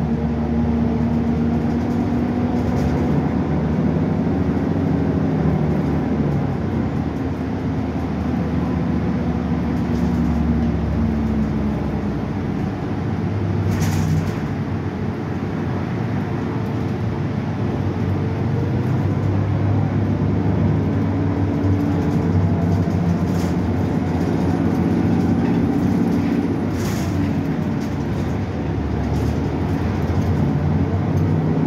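Cabin noise inside a moving 2015 Gillig 29-foot hybrid bus. Its Cummins ISB6.7 diesel and Allison hybrid drive hold a steady drone whose pitch shifts slowly, over road noise. Two brief sharp rattles stand out, one about midway and one near the end.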